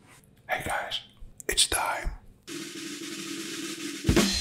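A man whispering two short phrases, with a couple of sharp clicks between them. This gives way about two and a half seconds in to a steady low hum with hiss.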